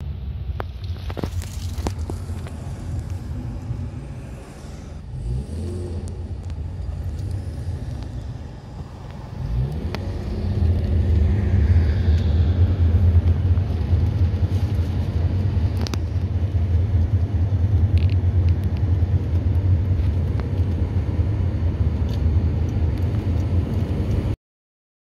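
Steady low road and engine rumble heard inside the cabin of a moving Mercedes-Benz car, growing louder about ten seconds in.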